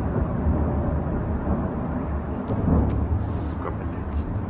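Steady low rumble and noise on a phone recording, with faint voices and a few brief hisses about three seconds in.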